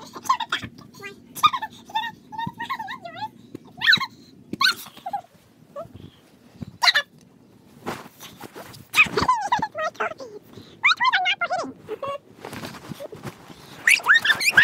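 A dog whining in many short, high, wavering calls, with longer falling whines about nine and eleven seconds in. A low steady hum runs underneath.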